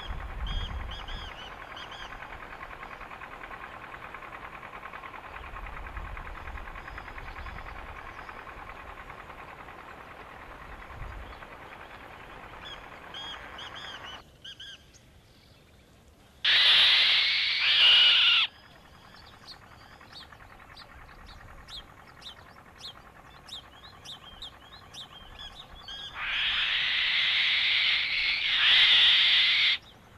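Black-winged kites calling: two loud, drawn-out calls, one of about two seconds just past halfway and one of nearly four seconds near the end. Between them are faint high chirps, over a steady background hiss.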